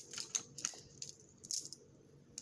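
Pens clicking and rattling against each other as they are handled in a small pen pouch: a few short, light clicks, the loudest about one and a half seconds in.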